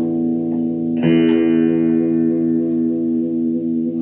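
Electric guitar chord ringing through a combo amp's vibrato channel, restruck about a second in and left to sustain; the effect is a true pitch-changing vibrato, not tremolo.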